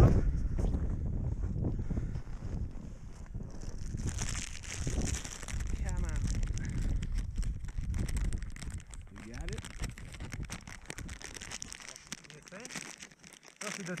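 Wind buffeting the microphone with scattered crackling and crunching of snow as a fish is pulled up by hand through a hole in the ice; the wind rumble drops away near the end.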